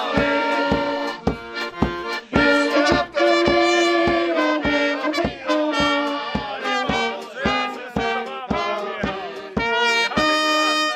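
A brass band playing a lively tune, with held brass notes over a steady drum beat.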